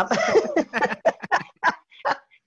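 An excited dog whining and yipping in a string of short, sharp calls.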